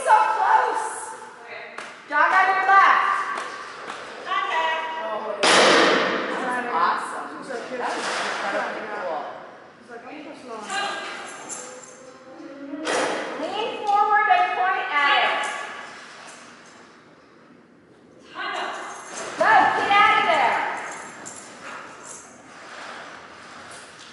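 Mostly voices: people talking in a large echoing hall, the words too unclear to make out, with a few noisier, rougher stretches between them.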